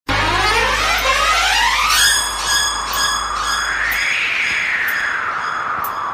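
Electronic music intro: a rising synthesizer sweep over a low hum for about two seconds, then high chiming tones pulsing about twice a second while another glide climbs and falls back down.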